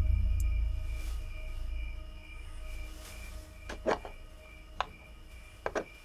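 Dark horror sound-design score: a low rumble fading away under faint, steady, high sustained tones, then a few short sharp clicks in the second half.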